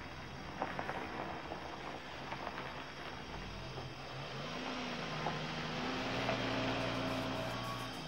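Car running, heard from inside the cabin as a steady low engine and road noise, mixed with a film music score. About halfway through, the score brings in long held low notes and slowly grows louder.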